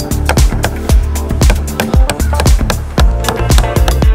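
Background music with a steady beat and bass line, drum hits about twice a second.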